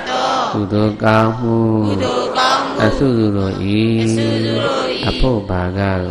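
A man chanting Buddhist Pali verses in long, drawn-out tones at a low, steady pitch, with brief breaks between phrases.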